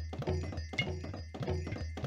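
Roland SPD-20 electronic percussion pad played fast with drumsticks: a quick, even run of sampled percussion hits, about six or seven a second, over a sustained low bass tone.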